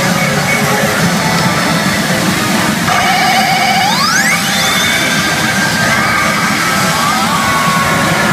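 Pachinko machine playing loud music and sound effects during a high-expectation reach presentation, with a trilling tone and then a steep rising sweep about four seconds in.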